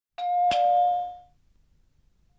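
Doorbell chime, two quick ringing notes a third of a second apart that fade out within about a second.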